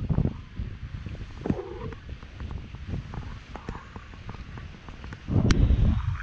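Wind buffeting the microphone in low rumbling gusts, strongest at the start and again near the end.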